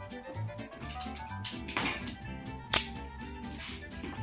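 Background music, with a brief rush of noise a little before the middle. About two-thirds of the way through comes one sharp clack as a stack of quarters is flipped off an elbow and caught in the hand.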